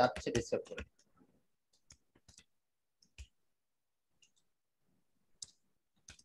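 A handful of faint, scattered keystrokes on a computer keyboard as text is typed, single clicks spaced irregularly over several seconds.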